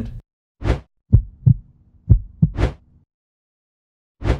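Outro sound effects: a short whoosh, then two heartbeat-like double thumps, each a lub-dub pair about a third of a second apart, then a second whoosh. Background music cuts off just at the start.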